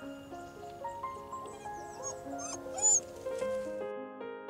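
Background keyboard music with slow stepped notes. A Wheaten terrier puppy gives a few short, high whines in the middle, the last one the loudest.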